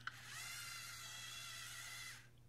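LEGO Mindstorms EV3 large motors running the robot's two-second counterclockwise tank spin: a click of the brick's centre button, then a steady, high-pitched gear whir that stops after about two seconds.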